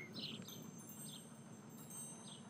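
Faint background birdsong: a few short, high chirps spread irregularly over a quiet hiss.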